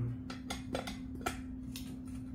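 A few light, irregular clicks and taps from an aluminium transom wheel bracket on an inflatable boat as it is handled, over a steady low hum.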